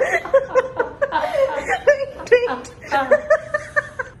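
People laughing hard in short, repeated high-pitched bursts, with a spoken word near the end.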